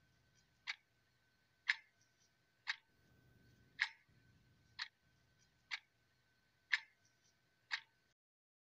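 Clock ticking at about one tick a second, with a faint steady high tone underneath.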